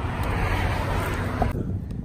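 Steady outdoor background noise: a low rumble with a hiss over it that cuts off abruptly about one and a half seconds in.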